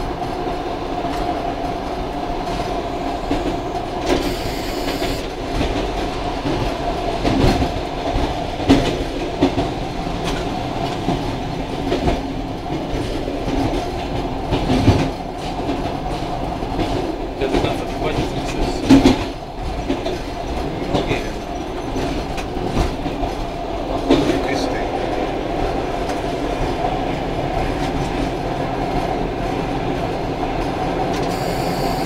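ER2 electric multiple unit heard from its driver's cab while running: a steady hum under a scatter of wheel knocks over rail joints and points, the loudest about 19 seconds in.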